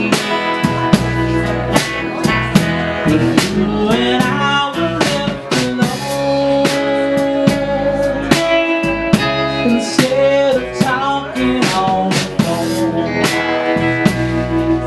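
Live band playing a folk-rock song: a man singing over a strummed acoustic guitar, with an electric guitar and drums keeping a steady beat.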